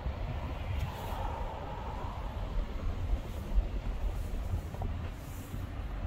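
Low, steady rumble of a car driving slowly, heard from inside the cabin.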